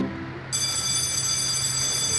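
Electric school bell ringing, a steady high-pitched ring of several held tones that starts about half a second in and keeps going.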